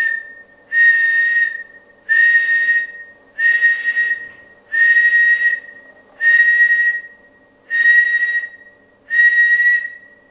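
A man whistling one steady note over and over into a transceiver microphone, about eight whistles of roughly a second each. The whistling is the test signal that keys the transmitter and drives a linear amplifier up to full output for a power test.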